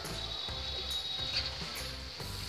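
Soft background music, with faint scraping of a spatula stirring cooked potato and cauliflower in a frying pan.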